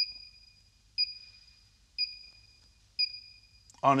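Electronic combustible-gas leak detector beeping, one short high beep about once a second at a steady rate. This is its unhurried baseline; a leak would make the beeping speed up.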